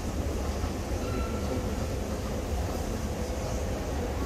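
Escalator running: a steady low mechanical rumble with a faint hum, heard while riding on the moving steps.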